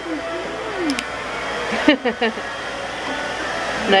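Hair dryer blowing steadily, a continuous rushing of air, with brief voices over it.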